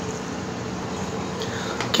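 Vacuum-tube Tesla coil running: a steady buzzing hiss with a faint hum. A short click comes near the end as the room lights are switched off.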